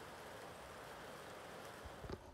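A steady, even hiss of background noise, with a short thump right at the end.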